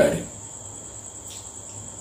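A pause in a man's speech, leaving faint background noise with a thin, steady high-pitched whine that also runs under his voice.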